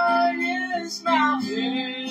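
Live singing with a strummed acoustic guitar: a held sung note ends just after the start, and a new phrase comes in about a second in with an upward slide.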